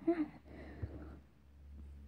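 A voice finishing a word at the start, then faint room tone with a steady low hum and one small click about a second in.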